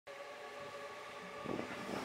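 A train running on the railway tracks, with a steady whine. Music comes in about a second and a half in.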